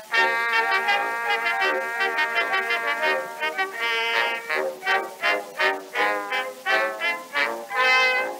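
Small orchestra playing an instrumental passage on an early acoustic recording. It opens with held chords, then moves to a lively run of short notes, about three a second. The sound is thin and lacks deep bass.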